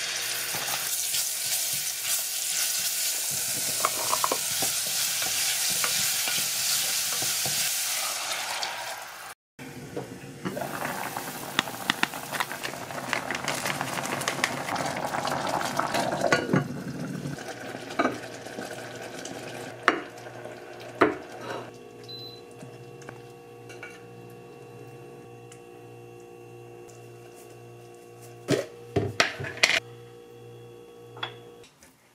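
Chopped garlic, onion, carrot and zucchini sizzling in oil as they are stir-fried in a small saucepan, with a utensil stirring and scraping. The sizzle is loudest for the first eight seconds, breaks off, and returns with stirring clicks. It then dies down to a low hum with a few sharp knocks near the end.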